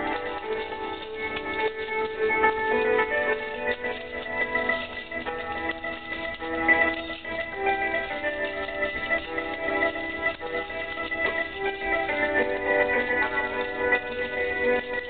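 Instrumental background music with a steady run of changing pitched notes.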